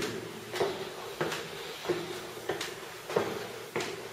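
Footsteps climbing brick stairs: about six steps in a steady rhythm, a little over half a second apart.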